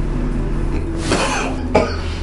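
An elderly man coughing: two short, harsh coughs about a second in, the sign of his persistent cough.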